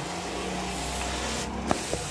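Water jet from a hose spraying into the wet coil and fins of an air conditioner's indoor unit during cleaning, a steady hiss over a low hum. The hiss breaks off briefly about one and a half seconds in, with a small click just after.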